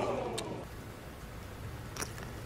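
Faint, low, steady rumble of bowling-centre ambience, with one short click shortly after the start.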